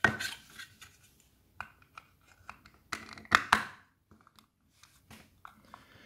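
Plastic clicks and scrapes as the white plastic lid of an RJ12 phone socket box is handled and fitted over the circuit board onto its base, with two sharper clicks a little past halfway.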